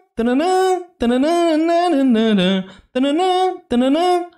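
A man singing short wordless phrases unaccompanied, held notes gliding up and down in four phrases with short breaks between them. He is imitating the different vocal lines to show how each voice projects.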